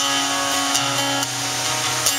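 Acoustic guitar strummed live, a few chord strums ringing on between sung lines.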